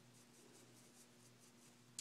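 Near silence: faint soft strokes of a makeup brush over skin, over a low steady hum.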